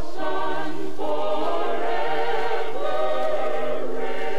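A choir singing sustained chords in close harmony on a 1960s gospel record, the held notes moving to new chords about a second in and again near the end.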